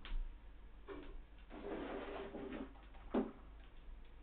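Handling noises in a small room as objects are moved about: a few light knocks and clicks, a scraping sound lasting about a second, and a sharper knock about three seconds in.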